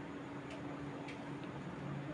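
Knitting needles clicking faintly against each other as a purl stitch is worked: a few soft, irregular ticks over a low steady hum.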